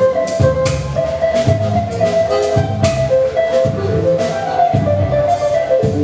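Live instrumental band playing: accordion, electric guitar, electric bass and drum kit together, with a melody of held notes over a bass line and frequent drum and cymbal hits.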